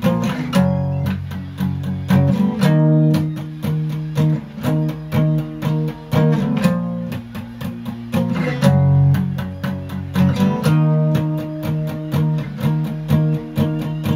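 Steel-string acoustic guitar playing a power-chord riff with quick, even, palm-muted strums. The chord changes every couple of seconds, and the riff comes round twice.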